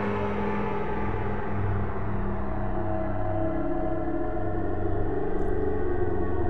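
Crisalys software synthesizer playing a sustained pad: a deep, held chord with many overtones, steady in level and slowly shifting in colour.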